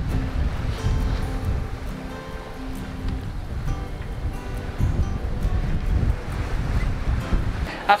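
Wind buffeting the microphone and sea water rushing past a sailing yacht under way, a strong uneven low rumble, with background music underneath.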